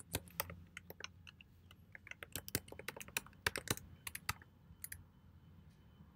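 Computer keyboard typing: an irregular run of key clicks, thickest about two to four seconds in, stopping about a second before the end.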